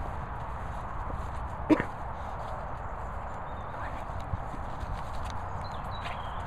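A Staffordshire bull terrier moving close to the microphone on grass, over a steady low rumble, with one sharp knock a little under two seconds in.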